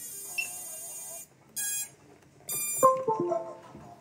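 Electronic beeps as a quadcopter is plugged in to the computer: a steady high tone cuts off about a second in, then two short high beeps, then a short ringing sequence of several chime-like tones.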